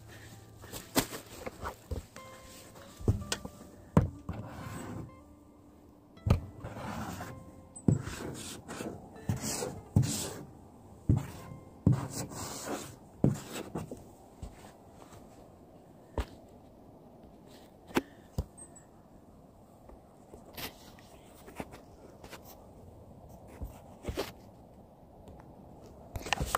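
Faint, irregular clicks and knocks scattered through a quiet outdoor background, the handling noise of a handheld phone camera and footsteps as it is carried around a parked van.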